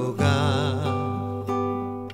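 Nylon-string classical guitar: a chord struck just after the start and left ringing, with more notes plucked about a second and a half in.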